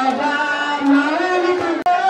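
A woman singing a devotional song over a microphone in long, held, gliding notes. The sound drops out for an instant near the end.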